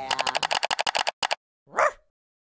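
Logo sound effect: a fast stutter of about a dozen short clicks, then a single dog bark near the end.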